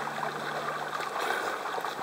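Water splashing and sloshing steadily as several swimmers move about in it.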